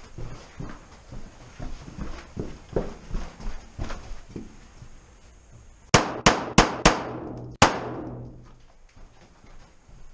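Five pistol shots, an S&W M&P9 firing 9 mm: four in quick succession and a fifth after a short pause, each echoing off the rock of an enclosed cave. Before them come a few seconds of soft footsteps and movement.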